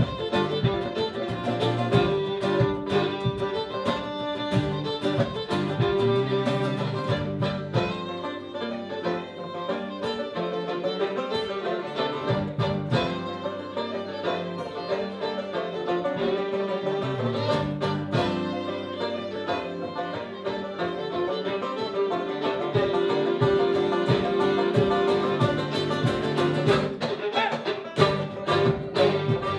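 Live fiddle and strummed acoustic guitar playing an instrumental tune, the fiddle carrying the melody.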